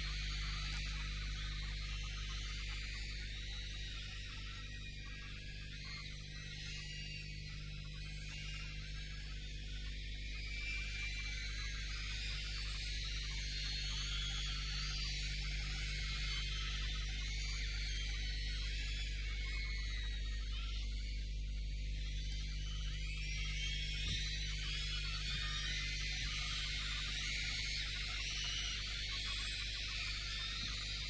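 A large concert audience screaming and cheering, many high voices overlapping, easing off a little then swelling again partway through. A steady electrical mains hum runs underneath.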